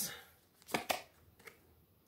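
Tarot cards handled as one is pulled from the deck: two brief clicks close together a little under a second in, then a fainter one.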